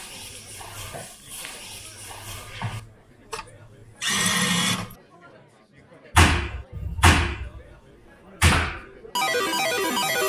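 Low room noise, then a loud burst of noise about four seconds in, followed by three heavy thuds between six and nine seconds. Busy electronic music starts just before the end.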